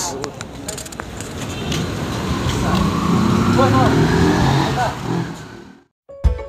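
A vehicle driving past on the street, growing louder to about four seconds in and then fading, before the sound cuts off just before the end.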